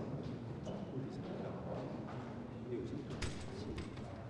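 Footsteps of several people on a hard floor with an indistinct murmur of voices, broken by scattered sharp clicks; the clearest click comes a little after three seconds in.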